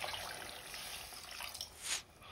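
Cold water pouring from a glass measuring jug into a pan of simmering rice, a steady trickle of liquid that swells briefly near the end.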